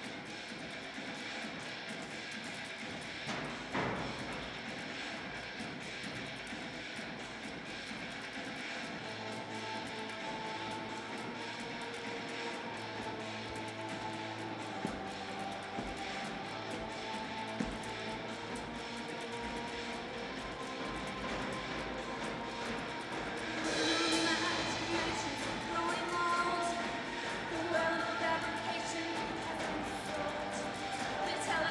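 Recorded gothic industrial rock song played back on set through speakers: sustained, droning instrumental tones. About three-quarters of the way through it gets louder and a singing voice comes in.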